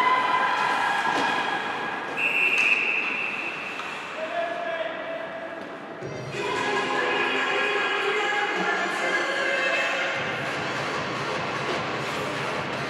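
Hockey rink with voices and shouts in the arena, and a short, high, steady whistle blast about two seconds in as the referee stops play. From about six seconds in, music with held tones plays over the rink.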